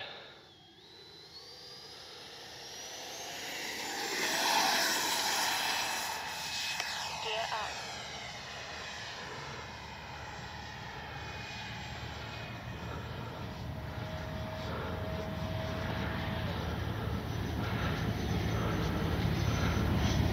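Electric ducted fan of a Freewing JAS-39 Gripen RC jet (80 mm, 12-blade, inrunner brushless motor) spooling up for takeoff. A whine climbs steeply in pitch from about a second in and is loudest around five seconds. A few falling tones follow, then a steadier, quieter whine as the jet climbs away.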